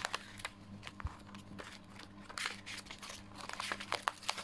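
Paper planner pages being turned and flipped by hand, rustling and crinkling irregularly with several short sharp clicks, one about a second in and a cluster near the end.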